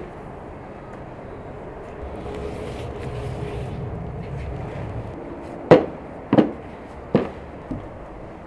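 A shovel knocking against a wheelbarrow while soil is loaded: three sharp knocks about two-thirds of a second apart, with a smaller one after, over steady background noise.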